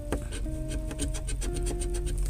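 A large metal coin scraping the coating off a scratch-off lottery ticket in quick repeated strokes, over background music with held notes.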